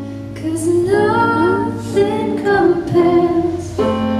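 A woman singing live into a microphone: a slow melody with long held notes that slide between pitches.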